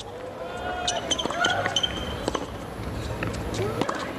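Tennis rally on a hard court: several sharp racket-on-ball hits and ball bounces spread through the few seconds, with short high squeaks of shoes on the court between them.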